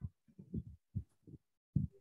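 Ballpoint pen writing on paper, its strokes carried through the desk as a run of about seven short, soft, low thuds.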